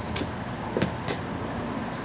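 Steady outdoor background hum of traffic, with a few light taps that fit footsteps on concrete steps.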